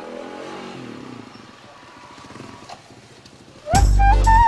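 Motorcycle engine running with a low, steady note; loud music with a flute-like melody starts suddenly near the end.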